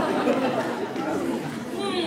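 Several voices talking over one another at once, an overlapping chatter echoing in a large hall.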